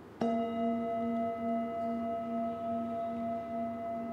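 A metal Tibetan-style singing bowl, resting on the back of a knee, is struck once with a wooden mallet a moment in. It then rings on with a steady, layered tone, its low note wavering slowly.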